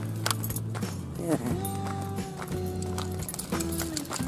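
Background music with long held notes that change every second or so.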